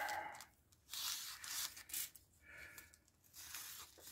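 Thin clear plastic bag crinkling and rustling in several short bursts as a printed decal sheet is worked out of it by hand.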